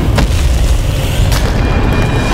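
Cinematic boom sound effect: a deep, continuous low rumble with two sharp hits about a second apart, and dramatic music tones coming in near the end.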